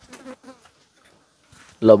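A flying insect buzzing faintly for about half a second in a lull, then a man's voice starts speaking near the end.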